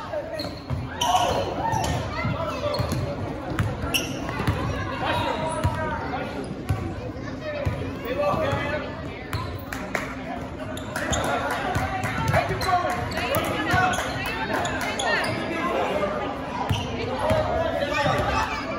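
A basketball being dribbled on a hardwood gym floor, the bounces echoing in the large hall, with voices from the players and crowd mixed in.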